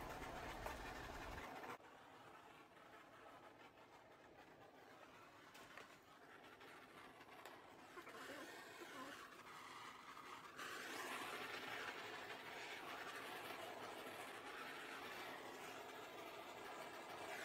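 Mostly near silence, then a faint steady hiss for the last third from a handheld torch flame passed over wet epoxy resin to pop the bubbles at its surface.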